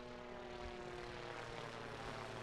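Propeller-airplane engine sound effect for a cartoon plane: a steady drone that swells in and then holds level as the plane flies across.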